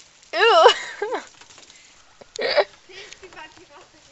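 A child's voice warbling, its pitch wobbling quickly up and down, about a third of a second in, with a shorter warble just after, then a short breathy burst about two and a half seconds in.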